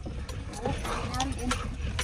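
Ford pickup truck's cabin while driving slowly over a rough dirt track: a low rumble with a few light knocks and rattles.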